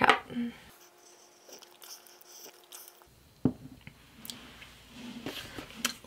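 Quiet mouth sounds of a tentative sip from a glass mug of hot tea, then a single knock about three and a half seconds in as the glass mug is set down on the table.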